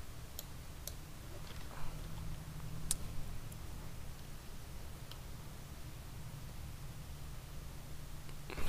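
A handful of faint computer mouse clicks, the sharpest about three seconds in, over a steady low hum.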